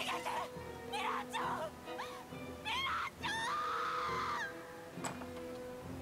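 An anime soundtrack at low level: a sustained music drone under a woman's anguished shouts and cries. The longest cry comes about three seconds in and is held for just over a second.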